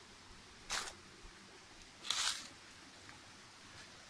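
Two brief rustling scuffs of movement and handling as the phone is carried among rocks and foliage, the second slightly longer, over a faint steady hiss.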